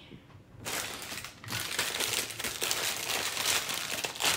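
Clear plastic bag of LEGO pieces crinkling as it is handled and opened, starting about half a second in, with a brief pause near the middle.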